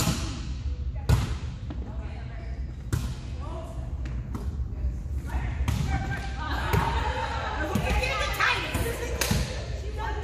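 Volleyball rally: a volleyball being struck by players' hands and forearms, sharp slaps every second or two that ring on in a large echoing gym, the loudest at the very start and about a second in. Women's voices call out over the later hits.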